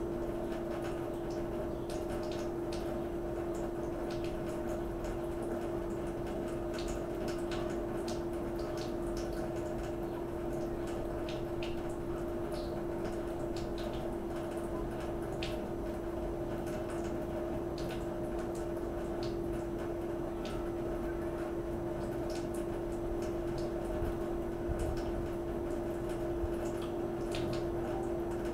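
Steady hum at a fixed pitch from an appliance or machine in the room, with faint, scattered small clicks throughout.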